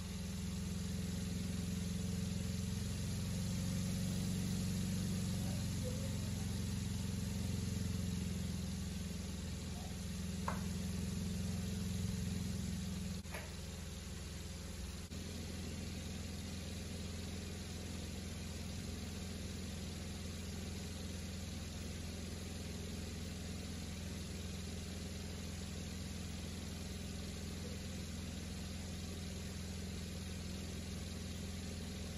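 Small DC motor spinning a propeller LED clock display, a steady low hum. The hum drops slightly about a third of the way in, with a couple of faint clicks around then.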